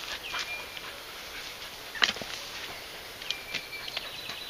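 Birds calling in the background, two short high whistles, one early and one late. About halfway through, one sharp knock as the dog lands on a wooden post before stepping onto the rope.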